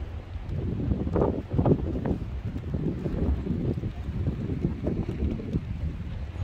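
Wind buffeting the microphone: an uneven low rumble, with stronger gusts between about one and two seconds in.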